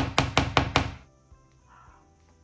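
A quick run of short, sharp rasping clicks, about five a second, stopping about a second in. This is a 2 mm graphite lead being twisted in the small sharpener built into a lead holder's push-button cap.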